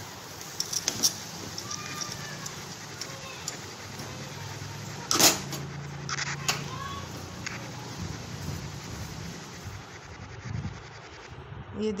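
Metal spatula stirring and scraping a thick coconut-and-milk sweet mixture in a metal kadhai. There are light clicks throughout and one sharp clink of the spatula against the pan about five seconds in.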